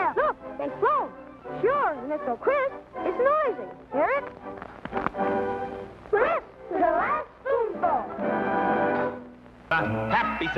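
High-pitched, squeaky cartoon voices chattering in quick swoops up and down in pitch, over light music, with a few held, steadier chords in the second half.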